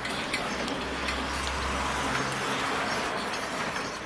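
Vintage East German 'Bat' gasoline blowtorch burning with a steady rushing hiss, its flame still large and yellow because the burner has not yet warmed up enough to vaporise the fuel fully. Light clicks come from the brass hand pump as it is stroked to build pressure in the tank.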